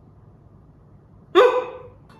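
A woman's short, high-pitched vocal sound, not a word, about one and a half seconds in. It rises sharply at the start and fades within half a second, over a faint low hum.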